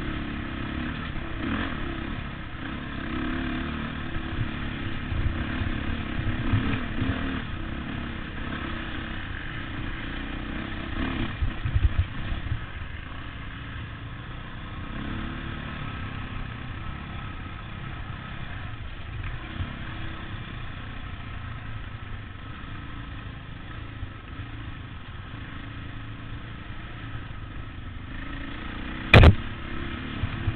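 Off-road motorcycle engine running as the bike rides a bumpy dirt trail, with clatter from the rough ground. One sharp, loud knock comes near the end.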